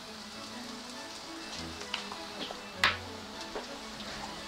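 Parsnips sizzling steadily in olive oil in a frying pan, with coconut nectar being poured over them, under soft background music. One sharp click about three seconds in.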